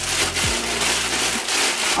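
Tissue paper rustling and crinkling as hands pull it around a sneaker inside a cardboard shoebox, a dense, continuous rustle.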